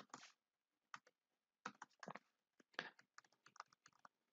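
Faint computer keyboard typing: about a dozen short, irregular keystrokes.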